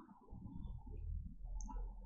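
Quiet room tone with a low rumble and a few faint, small clicks.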